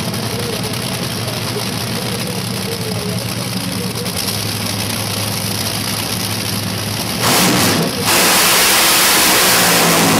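Two Top Fuel dragsters' supercharged nitromethane V8 engines idling at the start line, then about seven seconds in they go to full throttle on the launch with a sudden, much louder, harsh blast that dips briefly about a second later and then carries on.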